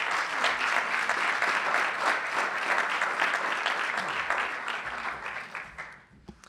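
Audience applauding, the clapping dying away over the last second or so.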